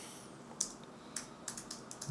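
Keystrokes on a computer keyboard: about five separate, light key clicks typed at an unhurried pace.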